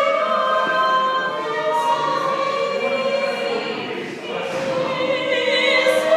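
Choral singing in an operatic style, several voices holding long notes with vibrato; it eases a little about four seconds in, then swells again near the end.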